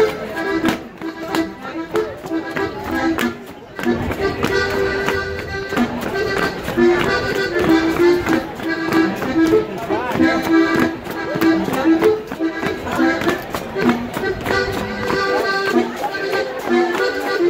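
Live accordion playing a lively traditional folk dance tune, with frequent short sharp taps over the music. The playing thins out briefly about three seconds in.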